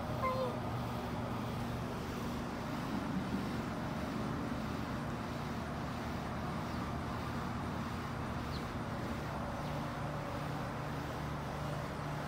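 Domestic cat giving one short, falling meow just after the start, over a steady low background hum. A few softer low sounds follow about three seconds in.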